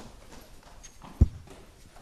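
Scattered faint knocks and rustling in a room, with one loud, short thump about a second in.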